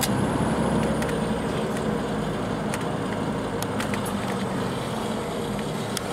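Interior noise of an MCI D4505 coach under way: its Cummins ISX diesel runs steadily under road and tyre noise, with a few light rattles.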